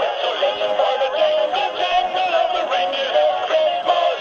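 Animated plush Christmas elf toy singing its Christmas song through its small built-in speaker: a thin, tinny electronic voice singing a melody over backing music.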